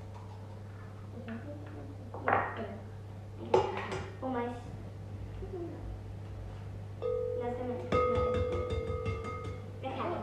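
Eggs being cracked on the rims of mixing bowls: two sharp knocks about a second apart. Over the last few seconds come held notes of background music with a light beat, over a steady low hum.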